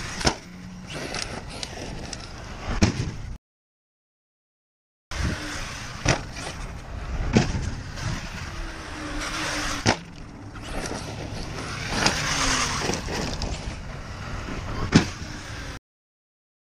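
An ARRMA Kraton 1/5-scale 8S RC truck with a Hobbywing 5687 brushless motor being driven and jumped on dirt. Tyres and drivetrain make a steady rush, with about six sharp thuds as the truck lands. The sound drops out twice at edits.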